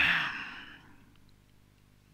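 A man's breathy sigh that fades away within about a second.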